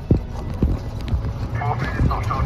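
Golf-cart-style buggy rolling along a paved path: a steady low rumble from the tyres and body, with repeated knocks and rattles as it goes over bumps.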